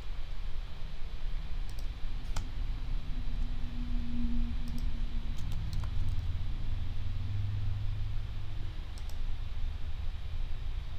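A handful of small, scattered clicks from working a computer mouse and keyboard, over a steady low hum.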